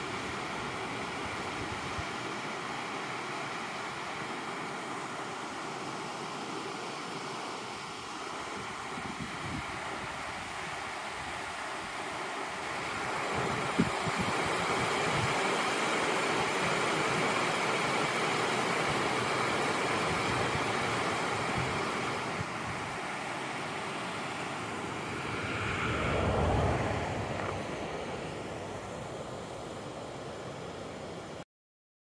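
Steady rush of water pouring over a mill dam's spillway, louder for a stretch in the middle. Near the end a vehicle passes, its sound swelling and fading away.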